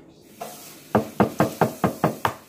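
A raw egg being knocked against a hard surface to crack its shell. There is one light tap, then a quick run of five sharp knocks in about a second.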